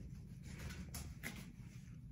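Faint, light ticking of a Shih Tzu puppy's claws on a ceramic tile floor as it runs, over a low steady room hum.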